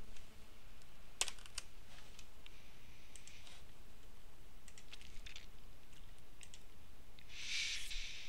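Computer keyboard keys clicking in small scattered groups of taps over a faint steady hiss, with a short rush of noise near the end.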